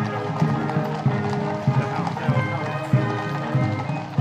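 Horses' hooves clip-clopping on the road as a column of Household Cavalry horses walks past, over a mounted military band playing brass music with sustained notes.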